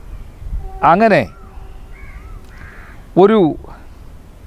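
A crow cawing twice, two loud harsh caws about two seconds apart, with faint calls of smaller birds in between.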